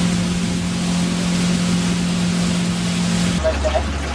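A motorboat's engine running at a steady pitch under a wash of wind and water noise. About three and a half seconds in, the hum switches abruptly to a lower one.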